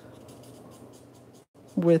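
Stampin' Blends alcohol marker rubbing over cardstock in short coloring strokes, faint, stopping about three-quarters of the way through.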